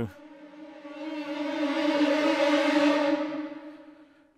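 Sampled orchestral strings from ProjectSAM Symphobia 2's Ghostly Strings 'Undead Trills Crescendo' patch playing an eerie sustained trill that swells in a crescendo to a peak about two to three seconds in, then dies away.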